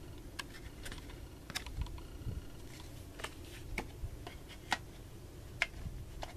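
Handling noise from a CD booklet and plastic jewel cases: about ten small, scattered clicks and light rustles, with no rhythm.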